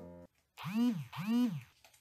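A person's voice making two matching wordless sounds, each rising and then falling in pitch, like a hummed or sung 'mm-mm', just after a steady held tone cuts off.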